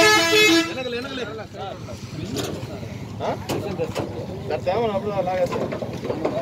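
A vehicle horn sounds once, a steady blare of about a second at the start, over people talking in the background.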